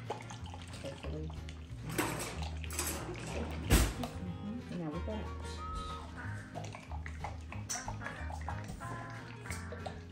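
Oil-and-vinegar dressing sloshing in a lidded jar as it is shaken by hand, over background music with a steady bass line.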